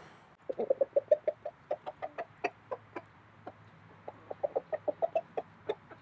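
Chickens clucking in quick runs of short clucks while they are fed scraps. One run comes about half a second in and another near the end, with scattered single clucks between.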